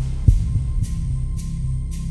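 Background suspense music: a low pulsing bass with one deep hit just after the start and faint ticks about twice a second over a steady high tone.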